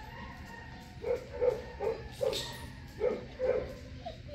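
A dog whining: a string of short, pitched whines at roughly two or three a second, starting about a second in.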